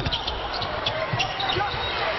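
Basketball arena sound: crowd noise and voices, with a basketball bouncing on the court and short high squeaks.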